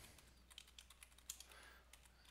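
Faint keystrokes on a computer keyboard: a handful of scattered key clicks as a new password is typed in.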